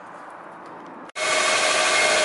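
Faint background for about a second, then a sudden cut to a loud, steady running noise with a few steady whining tones: the car's gasoline engine running, heard from underneath the car.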